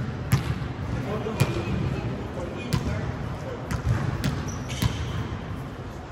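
Volleyball being served and played: about six sharp smacks of hands and arms striking the ball, spaced about a second apart, echoing in a large gym, over the chatter of players' voices.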